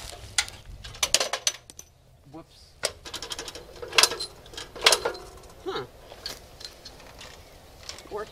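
Irregular metal clicks and clanks of parts being handled and fitted onto the housing and lens front of a studio Fresnel light, with a few sharper knocks.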